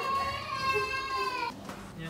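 A woman's high-pitched scream of fright at being startled: one long, steady shriek that sags slightly in pitch and cuts off at about a second and a half.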